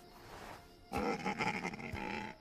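A dinosaur calf calling: a pitched, bleat-like cry that starts suddenly about a second in and carries on to near the end.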